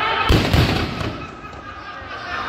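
Fireworks packed in a Ravana effigy exploding: a loud bang about a third of a second in, a second one right after, then a rumble that fades out over about a second.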